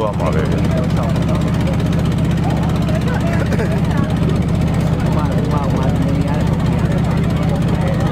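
An engine running steadily nearby: a low, even drone with a fast regular beat. Faint voices talk over it.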